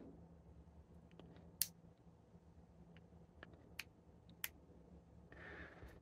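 Near silence broken by a few faint, sharp clicks, spaced out and irregular, the clearest about a second and a half in, from fingers handling the Feyachi LF-58 green laser/flashlight unit and its switch.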